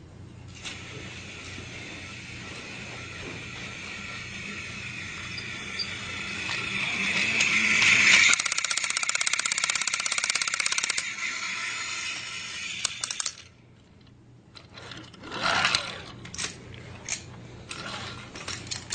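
A small motor whirring and growing louder, then running with a fast, even mechanical rattle for several seconds before cutting off suddenly. A few clicks and knocks follow near the end.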